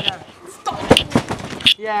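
A person bouncing on a backyard trampoline, the mat thudding with each landing, about three bounces under a second apart as he builds height for a flip.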